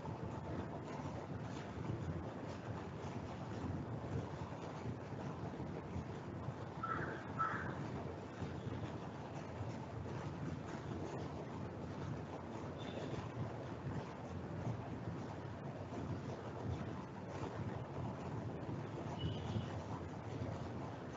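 Steady low background noise: room rumble and microphone hiss picked up by a lecture recording, with a few faint short chirping tones, two close together about a third of the way in and a couple more near the end.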